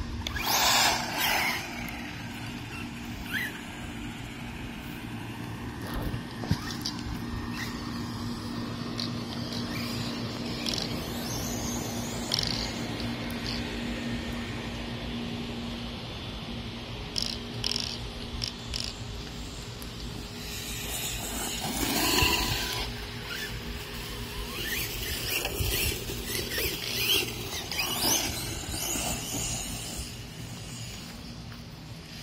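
1/10-scale electric RC monster truck running on a 2S battery, its motor whining in bursts as it accelerates and lets off, with its tyres on asphalt and then grass. The loudest bursts come right at the start and again about 22 seconds in.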